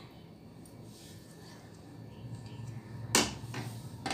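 A utensil knocks once sharply against a mixing bowl about three seconds in, with a smaller tap just after, as curd is added to the mutton marinade.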